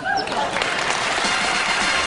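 Studio audience applauding, the clapping swelling over the first half second and then holding steady.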